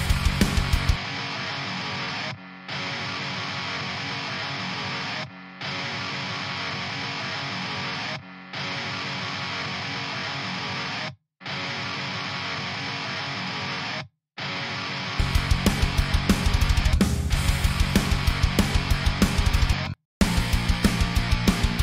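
Distorted heavy-metal electric rhythm guitar riff played alone, pausing briefly between phrases, twice stopping dead for a moment. The phrases are edited takes whose beginnings and endings are faded so they don't sound chopped off. Drums and bass come back in with the full mix about fifteen seconds in.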